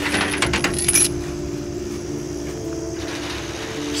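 Heavy-duty steel tow chain clanking link on link as it is hauled off a truck deck, a rapid run of metallic clinks in about the first second, followed by a steady low hum.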